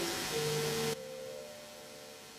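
Javanese gamelan accompaniment holding sustained notes, which cut off suddenly about a second in and leave a faint lingering tone.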